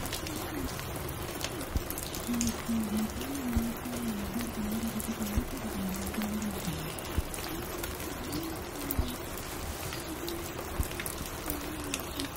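Steady rain with scattered soft clicks and crackles. Under it a low, wavering, muffled tone comes and goes, strongest from about two to seven seconds in, where it steps downward near the end.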